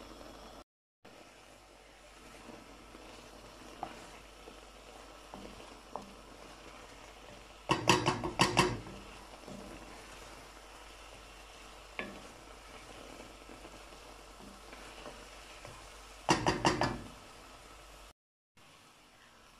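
Sliced mushrooms and flour frying in butter in a pot with a faint, steady sizzle as the flour cooks, while a wooden spoon stirs them. Twice, about eight seconds in and again near the end, a quick run of loud knocks comes from the wooden spoon against the pot.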